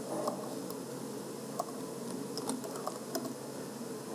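Laptop keyboard being typed on: a handful of sharp keystrokes and clicks at an uneven pace, over a low room murmur.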